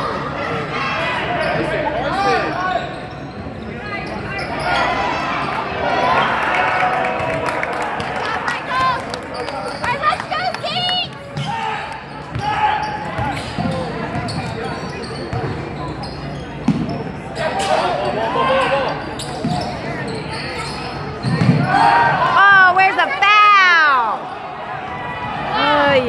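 Basketball game on a hardwood gym court: the ball dribbling, sneakers squeaking, and voices of players and spectators calling out, with the echo of a large hall. The squeaks come thick and loud about three quarters of the way through.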